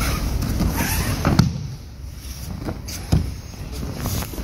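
Two people moving and grappling on padded training mats: rustling of heavy uniform cloth and shuffling feet for the first second and a half, then a few sharp thuds. The loudest thud is about a second and a half in, and another comes just after three seconds.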